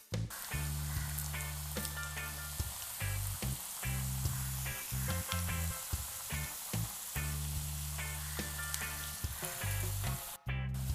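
Hot oil sizzling steadily in a kadai as masoor dal vadas deep-fry, with background music underneath.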